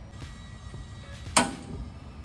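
A single sharp clack a little past halfway, over faint background music.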